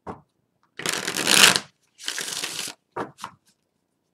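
A deck of tarot cards being shuffled by hand: two loud rustling shuffles of about a second each, followed by two short knocks near the end.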